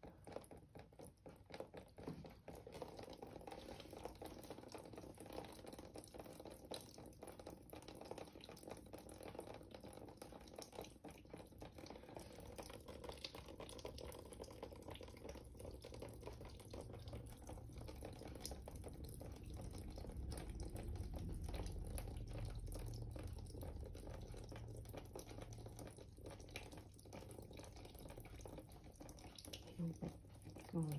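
Faint trickling and dripping of water into a plastic stream-table tray of sand and clay, with scattered small drips. A low rumble swells up about two-thirds of the way through, then eases.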